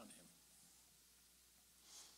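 Near silence: faint room tone with a low hum, after the last syllable of a spoken word, and a soft breath near the end.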